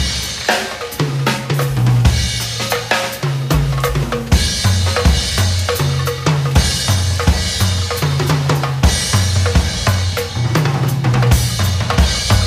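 Jazz drum kit played busily, with rapid snare and bass-drum strokes and stretches of ringing cymbal wash, over a low bass line moving in steps underneath.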